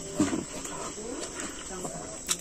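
A man chewing a mouthful of rice and curry eaten by hand, with faint low voice sounds such as a brief hum.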